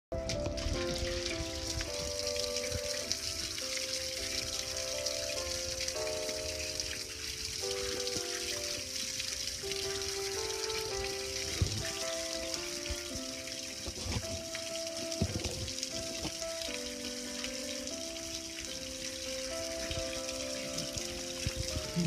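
Water from a garden hose spraying and splashing steadily over a gas grill's metal lid and body, a continuous hiss. A simple melody of held notes plays over it, and there are a couple of sharp knocks in the middle.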